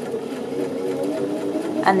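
Janome 725s Sewist electric sewing machine running steadily, stitching a row of stay stitching along the edge of a single layer of calico.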